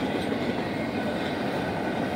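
CSX intermodal freight train's container cars rolling past close by: a steady rumble of wheels on rail.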